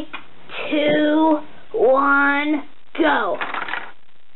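A voice making wordless vocal sounds: three drawn-out calls of about a second each, the last one sliding down in pitch.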